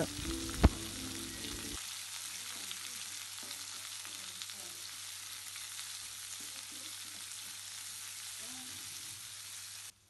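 Sliced onions, shallots, chillies and curry leaves sizzling in hot oil in a metal kadai, with a steady hiss as they are stirred with a wooden spatula. A single sharp knock of the spatula against the pan comes about half a second in.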